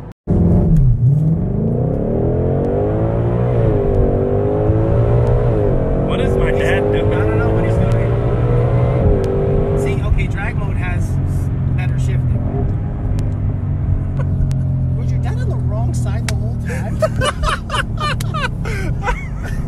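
2020 Shelby GT500's supercharged 5.2-litre V8 heard from inside the cabin, its pitch climbing under acceleration for several seconds. The pitch drops back sharply about ten seconds in and the engine then settles to a steady cruise. People talk over it at times.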